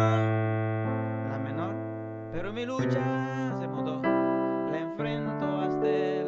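Electronic keyboard with a piano sound playing slow, sustained chords. A new chord is struck about three seconds in, again about a second later, and once more a second after that.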